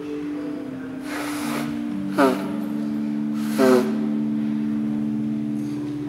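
Church organ holding slow, steady chords that move to new notes. Two brief loud noises, each with a quick falling pitch, stand out above the organ about two and three and a half seconds in.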